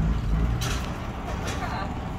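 Speedboat engine idling with a low, steady rumble that eases about half a second in, with two short clatters and some background voices in the cabin.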